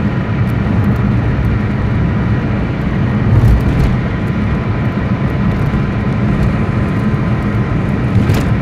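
Engine and road noise heard inside a moving vehicle's cabin: a steady low rumble.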